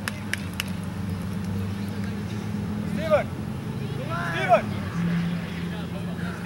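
Shouts from players and spectators across a soccer field, a short call about three seconds in and a louder one about four and a half seconds in, over a steady low hum that drops slightly in pitch near the end.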